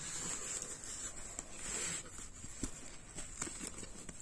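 Handling noise of a small pouch being pushed into the fabric mesh pocket in the lid of a hard-shell storage case: a rustle of fabric rubbing for about two seconds, then a few light taps and clicks.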